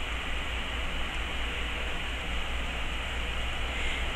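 Steady hiss with a low hum underneath and no other sound, the background noise of a quiet indoor recording.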